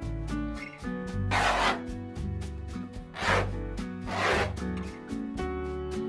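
Three brief rubbing sounds, the first the longest, of heavy raw canvas being handled and pressed flat against the wall, over background music with a steady beat.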